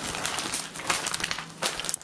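Plastic food packaging crinkling and rustling in irregular bursts as it is handled.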